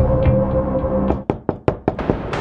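Background music with a held low chord stops about a second in. It is followed by a quick run of about five sharp knocks on a wooden door.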